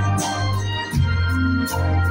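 Live church ensemble playing instrumental hymn music: held chords over a steady bass, the chord changing about a second in.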